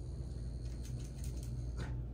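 Soft rustling and faint clicks of a dog's ear being handled and wiped with gauze during an ear cleaning, over a steady low rumble.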